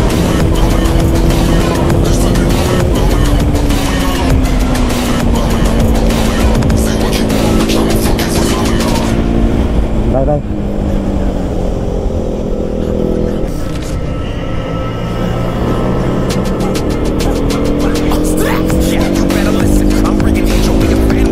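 KTM RC 200's single-cylinder engine running while riding, with wind noise: the revs drop about three seconds in, ease off further around the middle, and climb again near the end.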